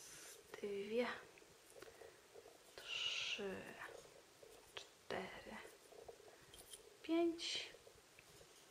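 A woman's voice, soft and near-whispered, saying short single words about every two seconds, four times. She is counting tatting double stitches under her breath.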